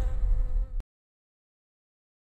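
A buzzing like a swarm of insects over a low, fading rumble. Both cut off abruptly a little under a second in, and the rest is dead silence.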